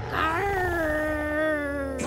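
A cartoon dinosaur's single long howl-like call, rising briefly at the start and then slowly falling in pitch, over a low rumble.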